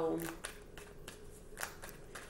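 A deck of tarot cards being handled and shuffled: a few short, soft papery rustles.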